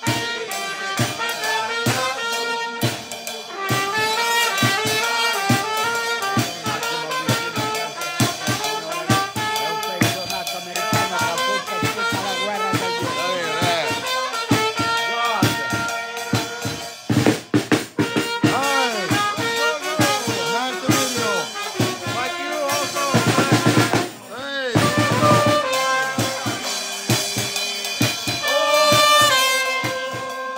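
Live band playing an upbeat tune: trumpets carry the melody over a drum kit with snare, bass drum and cymbals keeping a steady beat.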